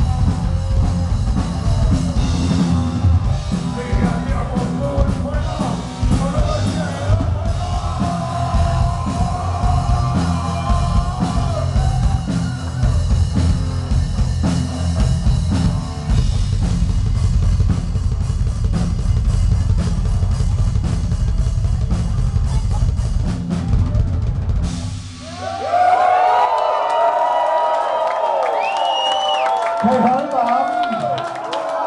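Heavy metal band playing live and loud, with a drum kit and electric guitars. The band stops about 25 seconds in, and the crowd then cheers and shouts.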